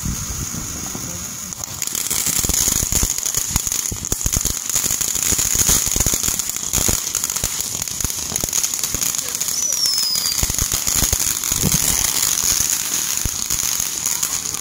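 Ground fountain firework spraying sparks: a steady high hiss with dense crackling, growing louder about two seconds in.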